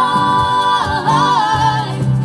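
Live acoustic pop-band music: female voices hold two long sung notes, the second bending in pitch, over acoustic guitars and keyboard.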